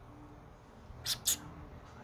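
A cat licking its wet fur while grooming after a bath: two short, quick lick sounds about a second in.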